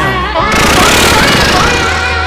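A loud, harsh rattling noise starts about half a second in, over rap music.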